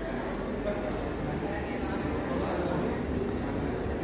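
Indistinct background chatter of people in a large indoor hall, over a steady low rumble.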